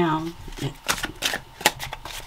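Tarot cards being handled and shuffled by hand, a series of quick sharp card clicks.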